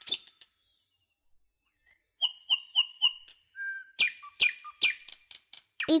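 Bird chirps and whistles: after a near-silent pause of about two seconds, a quick run of high chirps, then louder notes that slide downward in pitch, several in a row.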